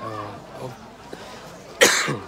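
A person coughing once, sharply and close to the microphone, near the end; it is the loudest sound here.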